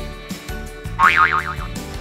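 Light background music with a cartoon 'boing' sound effect about a second in: a short springy tone that wobbles quickly up and down in pitch.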